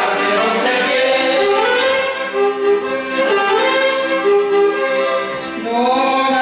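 Accordion and saxophone playing a folk-song melody in long held notes, an instrumental passage without singing.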